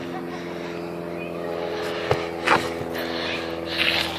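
A steady engine drone with a sharp knock about two seconds in.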